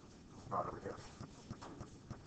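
Faint, irregular light knocks and taps, several a second, with a brief murmured voice about half a second in.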